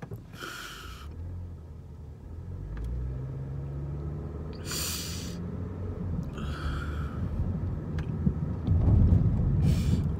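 Car rumbling, heard from inside the cabin, growing louder and rising in pitch as it gathers speed. Three sharp intakes of breath cut through it: about half a second in, about five seconds in, and about six and a half seconds in.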